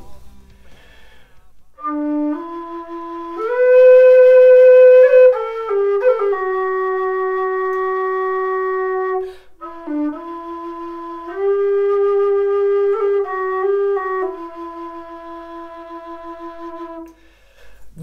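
Low D tin whistle playing a slow melody of long held notes decorated with quick ornaments. It starts about two seconds in, pauses briefly for a breath midway, and stops shortly before the end.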